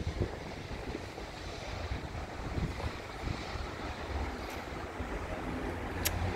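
Steady background road traffic noise from a main road, with some wind on the microphone.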